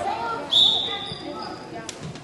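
A referee's whistle, one short blast about half a second in that fades quickly, over spectators' chatter in a gym. A sharp click comes near the end.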